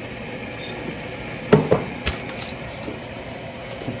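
A few sharp clinks and knocks of a coffee scoop against glassware as ground coffee is spooned into a paper filter in a glass Chemex; the loudest knock comes about a second and a half in.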